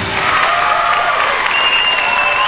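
Live concert audience applauding and cheering as the song's music stops, with a high sustained tone near the end.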